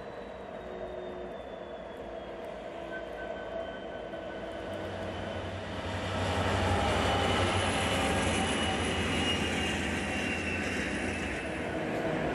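Diesel freight trains passing on adjacent tracks: locomotives running and wheels rolling on the rails, getting clearly louder about six seconds in as the second train comes by.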